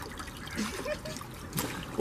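Water trickling and dribbling off a soaked head back into a plastic basin of water.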